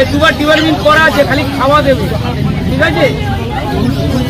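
Crowd chatter: several voices talking at once, over a low steady rumble.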